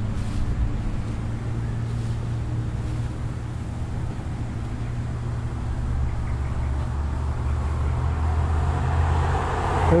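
Road traffic on a two-lane highway: a steady low engine-and-tyre hum, with a vehicle drawing closer and growing louder over the last few seconds.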